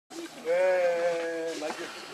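Infant pig-tailed macaque crying to nurse: one loud, drawn-out call about a second long with a slightly arching pitch, then a short squeak.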